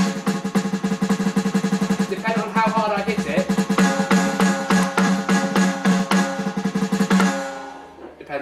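Roland HD-1 electronic drum kit playing its acoustic kit sound, struck in a fast, dense run of strokes on the mesh-headed pads, stopping a little before the end.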